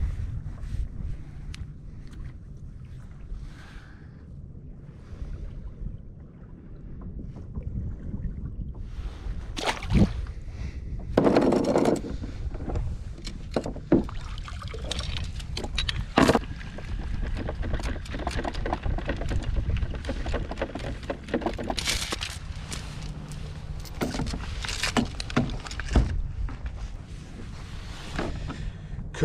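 Wind on the microphone and water around a kayak hull, then from about nine seconds in, repeated metallic clinks and knocks as anchor chain is handled and brought aboard the kayak.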